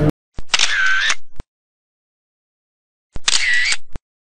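Camera-shutter sound effect played twice, about three seconds apart, over dead silence. Each is about a second long, with a click at the start and the end and a short tone between that dips and rises in pitch.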